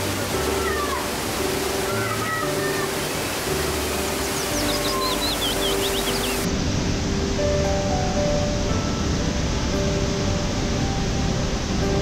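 Steady rush of a cascading waterfall under background music of long held notes, with bird chirps in the first half. About halfway through the water sound turns heavier and deeper.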